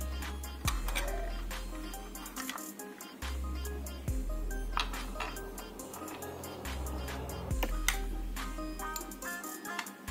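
Instrumental background music with deep held bass notes and a few sharp clicks.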